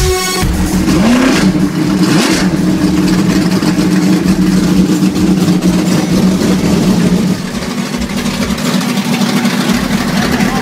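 Dirt-track race car engine running at idle close by, loud and steady, with a short rev about a second in.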